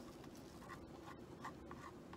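Faint, irregular scratching and brushing of a paintbrush spreading paint along the edge of a canvas.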